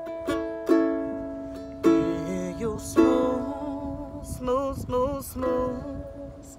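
Ukulele strummed in slow chords, each strum left to ring out, with softer playing in the last couple of seconds.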